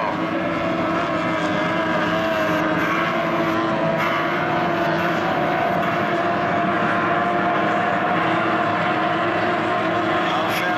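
Several SST 60 tunnel-hull race boats' two-stroke outboard engines running at racing revs, a steady high whine of several overlapping tones whose pitches waver slightly as the boats run the course.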